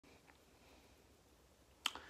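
A single sharp finger snap near the end, against faint room tone.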